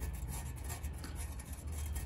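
Faint scraping and rubbing of a small metal tool spreading a thin skim of JB Weld epoxy along the welded seam of a transmission oil pan, over a low steady hum.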